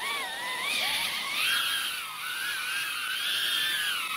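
BetaFPV 95X V3 cinewhoop's motors and ducted propellers whining as it lifts off the pad and hovers on a test flight, the pitch wavering up and down with the throttle.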